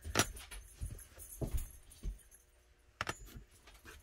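Small hard holster parts being handled and set down on a workbench mat: a few light clicks and knocks, with a cluster near the start, two more around a second and a half in, and a last group about three seconds in.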